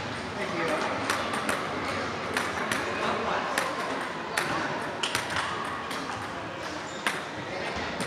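Table tennis rally: the ball clicks sharply off the paddles and table in a quick, uneven series of hits, about one every half-second to second, in a large, echoing hall.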